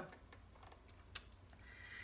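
A pause between words with almost nothing to hear but a low room hum. There is a single small click about a second in, and a faint airy sound near the end.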